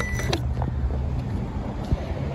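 Steady high electronic tone from a Power Probe ECT3000 circuit-tracer receiver, signalling that it is picking up the tracer signal on the wire; the tone cuts off a moment in, followed by a click. A steady low rumble runs underneath.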